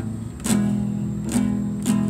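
Nylon-string classical guitar strummed by a beginner, going back and forth between two chords: a quieter moment at the start, then three strummed chords, the first about half a second in and two more close together in the second half, each left ringing.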